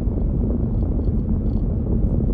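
Steady low rumble of road and engine noise heard inside a moving vehicle's cabin.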